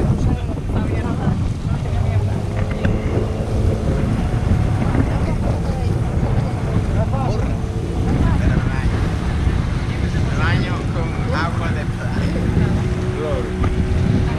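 Small open motorboat under way, its engine running steadily with a low rumble, wind buffeting the microphone and water rushing past the hull.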